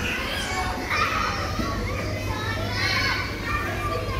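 A group of young children playing and calling out at once, their high voices overlapping without any clear words, over a steady low hum.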